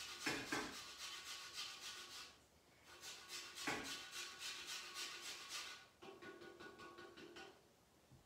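Fine grater rasping citrus peel for zest, in quick repeated back-and-forth strokes. There are three bursts of strokes, with short pauses about two and a half seconds and six seconds in.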